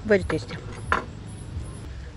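Cutlery knocking against plates during a meal, with one sharper knock about a second in. A brief vocal sound comes near the start, over a steady low hum.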